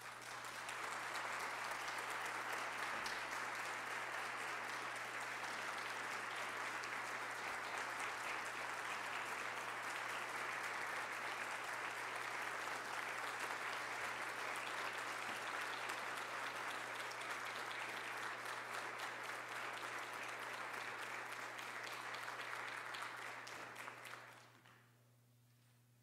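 Audience applauding steadily, the clapping swelling up in the first second or so and dying away near the end.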